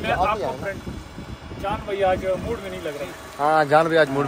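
Men's voices talking in short bursts, with no other sound standing out.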